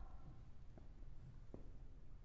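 A hush between percussion strokes: the ring of a struck percussion instrument fades out in the first moments, then two faint taps sound about a second and a second and a half in.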